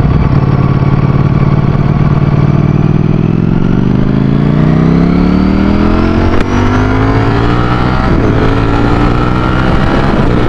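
Ducati Streetfighter V4's V4 engine accelerating the bike up through the gears. Its pitch holds steady for the first few seconds, then rises. There is a brief drop about six seconds in as it shifts up from second to third gear, and then the pitch climbs again.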